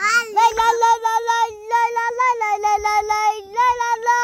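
A young child singing in a high voice, holding almost one note and breaking it into quick repeated syllables several times a second.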